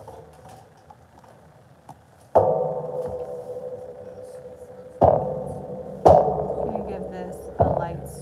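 Four struck, ringing tones like a gong or bell. The first comes about two seconds in and the other three close together near the end, each ringing on and fading over a second or more.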